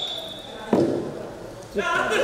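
A single dull thud in a large, echoing hall about a third of the way in. Voices start again near the end.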